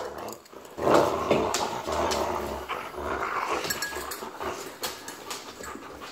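Siberian husky growling with a rope toy clenched in its teeth during tug-of-war, refusing to let go of it. The growl starts about a second in and tails off after a few seconds.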